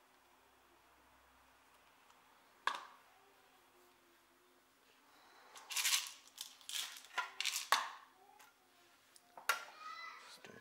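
Small hard-plastic handling sounds: one sharp click about three seconds in, then a run of clattering knocks and rattles from about halfway on, as a plastic cup of coffee beans is lifted off a small digital kitchen scale and a clear plastic weighing tray is set onto it.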